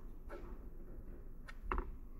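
Faint handling sounds: a few light, short taps about one and a half seconds in as fingers work a phone's touchscreen and hold a plastic earbud charging case, over low room noise.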